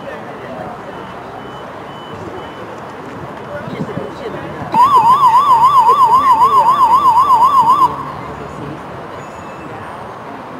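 A loud electronic warbling tone, rising and falling about four times a second, sounds for about three seconds and cuts off suddenly, with faint crowd noise around it.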